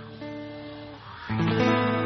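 Band music with guitar chords ringing on. It dips about a second in, then a louder new chord is struck and held.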